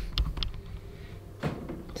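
A knock at the start, then a few faint clicks and a soft tap about a second and a half in, over a low steady hum of room noise.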